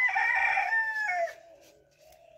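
A rooster crowing once: a long call that drops in pitch and stops about a second and a half in.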